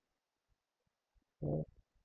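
Near silence, with one short word spoken by a man about one and a half seconds in and a few faint low thuds around it.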